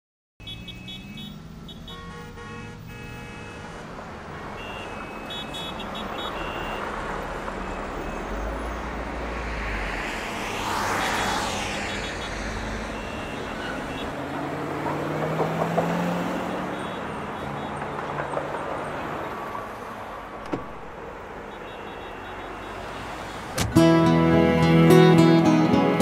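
Road traffic ambience with a car passing by about halfway through, under faint held music tones, and a single sharp click later on. The music comes in loudly at the very end.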